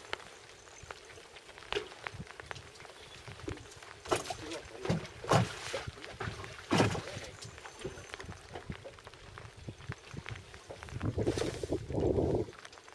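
Water lapping against the hull of a small boat, with scattered clicks and knocks and a few short bursts of voice. A louder, lower rush of sound builds about a second before the end.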